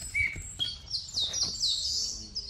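Small songbirds chirping: a quick run of short, high chirps, each falling in pitch, several a second.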